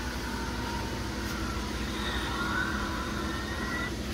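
Steady industrial machine-shop background noise: a low hum with faint whining tones, one rising slightly in pitch over the second half.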